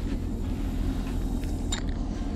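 Steady low rumble of wind on the microphone, with a few faint clicks near the end from the feeder rod's spinning reel being handled just after a cast.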